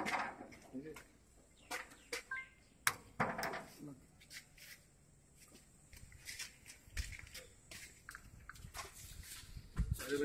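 Scattered light metal clicks and knocks from hands working a shipping container's door locking handle and bolt seal, with one sharp click about three seconds in.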